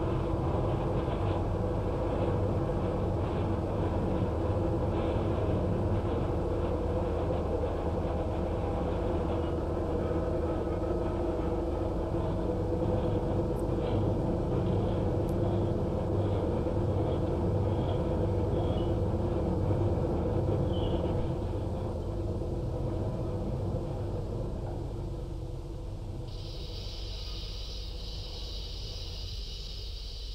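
Factory machine tools cutting metal gun parts, running with a steady drone and hum over a low rumble. The drone eases off after about 22 seconds, and a steady high-pitched hiss comes in near the end.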